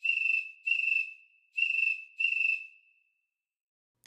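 Cricket-chirp sound effect from an iPhone app, set to slow chirps with a kitchen-like reverb: two pairs of high, steady-pitched chirps, the second pair about a second and a half after the first, with a short echo trailing off after the last chirp.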